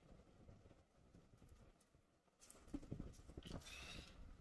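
Mouth sounds of eating rice by hand: quiet at first, then a run of wet smacking and chewing clicks from about halfway through, with a short high tone near the end.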